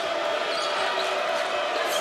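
Steady arena crowd noise at a live college basketball game, with a few faint knocks from the ball and sneakers on the hardwood court.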